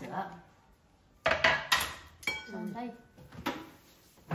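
Dishes and cutlery clattering: plates and utensils being set down and handled, starting with a sharp clink just over a second in and continuing in irregular knocks, one with a brief ringing tone.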